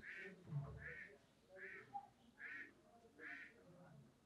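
Faint bird calls repeated five times at an even pace, a little under a second apart, heard beneath near silence.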